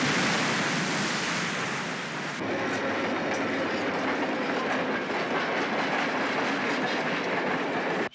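Surf crashing, cut off sharply about two and a half seconds in by a train passing close by, its cars rattling steadily over the rails until it stops abruptly at the end.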